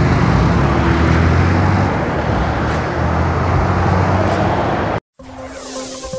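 Motorcycle engines and passing road traffic: engines running with steady tyre and road noise. It cuts off abruptly about five seconds in, and a short burst of electronic intro music starts just before the end.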